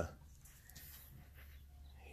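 Quiet background between phrases of speech: faint, even hiss with no distinct sound standing out.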